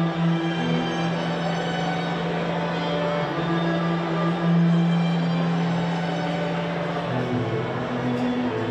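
String ensemble of violins and cello playing a slow passage of sustained chords over a long held low note.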